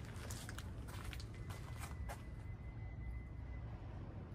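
Footsteps and a few light taps on brick paving, over a low steady outdoor background hum.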